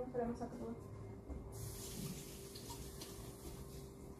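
Kitchen tap running into a sink, a steady rush of water starting about a second and a half in, as an item is rinsed under it.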